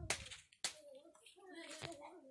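Faint voices in the background. Over them come three sharp knocks, one at the start, one about half a second in and one near the end, from cassava roots being knife-peeled and handled.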